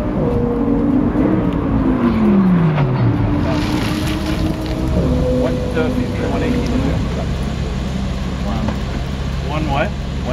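Audi R8's V10 engine slowing down, its pitch falling steadily during the first few seconds, then running at low revs as the car pulls up and stops.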